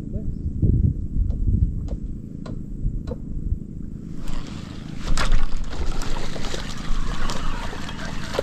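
Water splashing and sloshing in a shallow, muddy reed channel, setting in about halfway through as a run of sharp splashes. Before it there is a low rumble and a few light clicks.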